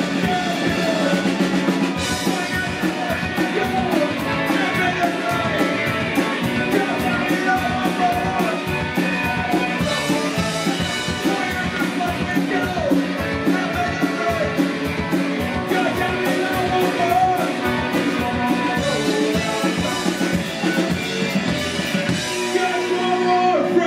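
Live band playing a fast rock song on fiddle, accordion, electric guitar and drum kit, with a quick steady drumbeat under the fiddle's melody.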